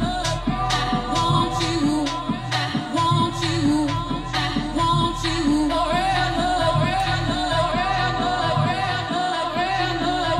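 Electronic dance music from a DJ set: a steady beat of about two beats a second with a pulsing bass line and a sung vocal over it.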